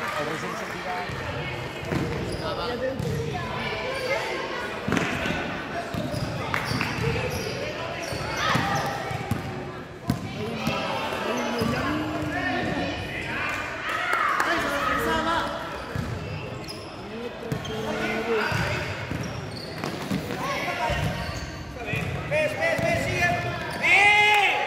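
Basketball bouncing on a sports-hall floor during play, with indistinct voices of players and spectators, in a large hall.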